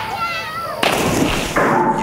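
Soundtrack of a TV commercial: loud bursts of noise, like booms or crashes, the second starting about a second in, with a voice and wavering tones over them.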